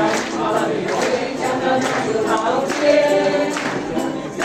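A mixed group of men and women singing a Mandarin song together as a small amateur choir, accompanied by ukuleles.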